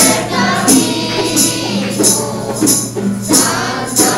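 A group of voices sings a Marian entrance hymn to a tambourine shaken on each beat, roughly every 0.7 seconds.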